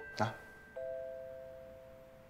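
Background music: a bell-like two-note chord struck about three-quarters of a second in, ringing and fading slowly, just after a brief spoken word.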